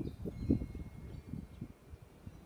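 Gusty wind buffeting the microphone: an uneven low rumble that swells about half a second in and then eases off.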